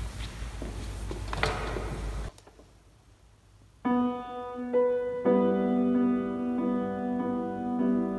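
Footsteps and shuffling with a few knocks as the player moves to the grand piano, then a short near-silent pause, and from about four seconds in a grand piano playing a slow prelude in sustained chords.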